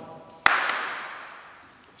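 One sharp crack a little under half a second in, trailing off over about a second and a half.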